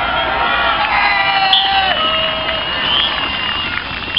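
A small crowd of spectators cheering and shouting together, many voices overlapping, greeting a goal.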